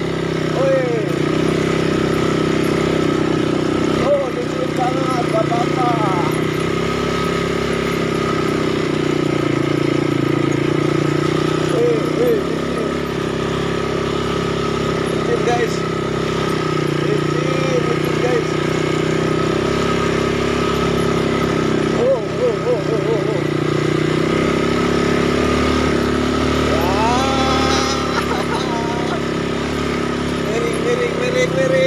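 Small ATV engine running steadily at a fairly even speed as the quad is ridden, with short, rising-and-falling voice sounds over it now and then.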